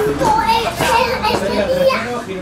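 Raised, high-pitched voices shouting out during a football match, players calling on the pitch, with no clear words.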